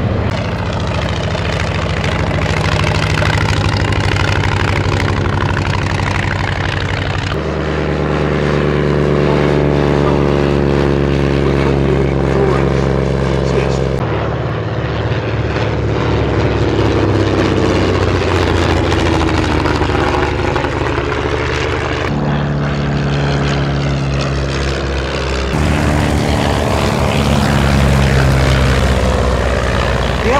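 Vintage propeller biplanes flying display passes, their piston engines and propellers droning steadily. The pitch falls as an aircraft passes, and the sound changes abruptly several times as the shots cut from one aircraft to another.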